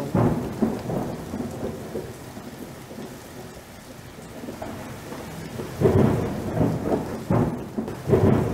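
Thunderstorm: steady rain with thunder, a crack right at the start fading into rumble, and heavier rolls of thunder building about six and seven seconds in.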